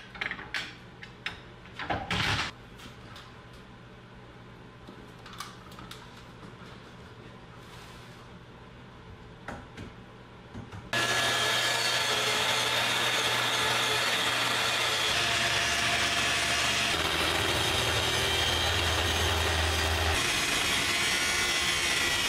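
A few light clicks and knocks as the track saw and its guide rail are set on the slab. About halfway through, a Kreg plunge track saw starts abruptly and runs loud and steady, cutting along a solid hickory slab to trim off its uneven bark edge.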